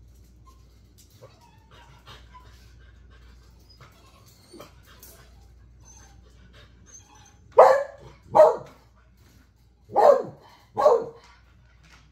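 Beagle barking four times, in two pairs, while sitting and looking up at a treat held in the hand. The barks are short and loud and start about seven and a half seconds in; before them there are only faint small taps.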